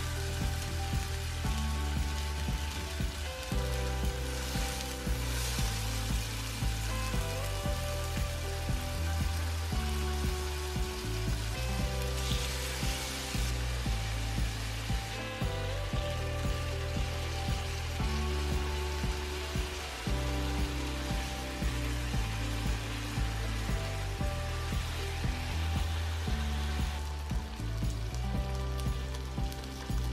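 Background music with a steady beat and bass line, over chicken pieces sizzling as they fry in hot oil in a pot. The sizzle swells briefly twice.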